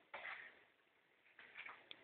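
Near silence, with one short faint hiss near the start and a few faint soft sounds later.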